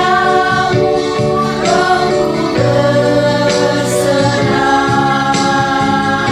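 A group of women singing a Christian worship song together, with long held notes that glide between pitches.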